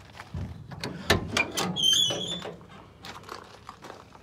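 A Chevy G20 van's side door being unlatched and opened: a click, a loud clunk about a second in, then a brief high squeak.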